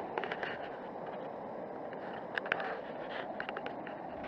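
Fast-flowing river rushing over rapids: a steady rushing noise, with a few short sharp clicks in the second half.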